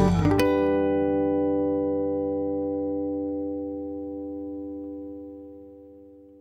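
Instrumental band music with guitars and drums playing to its close: a final chord is struck about half a second in and rings on, slowly fading away.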